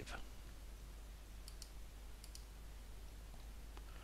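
Faint clicks at a computer, in two close pairs about a second and a half and two and a quarter seconds in, over low steady hiss, as the presentation is advanced to the next slide.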